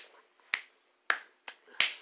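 Finger snaps: five short, sharp clicks at an uneven pace, roughly half a second apart.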